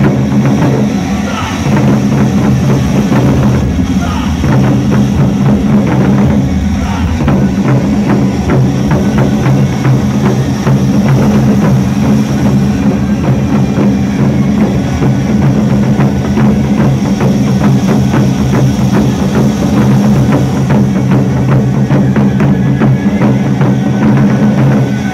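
An ensemble of large Chinese barrel drums played hard in fast, driving unison rhythm, loud and continuous, with dense rapid strikes and no break.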